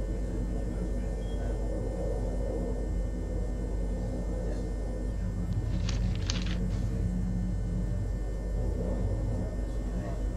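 A low, steady rumbling drone, with a short burst of crackling hiss about six seconds in.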